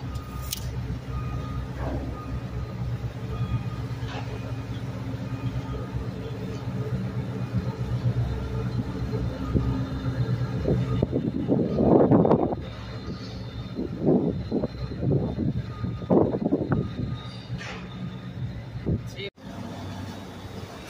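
Tugboat's diesel engine running with a steady low drone as the boat passes close by. Voices are heard over it for several seconds past the middle.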